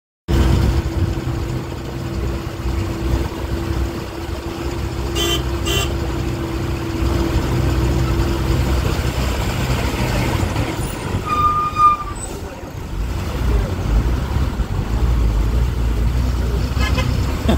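Bus engine running steadily on a hill road, with its low rumble heard from inside the bus through an open window. Two short horn toots come about five seconds in, and a higher horn note sounds briefly near twelve seconds.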